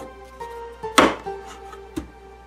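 A single sharp knock about a second in as a wooden block holding a neodymium magnet is set down into a wooden tray, with a smaller tick near the end. Background music with held notes plays under it.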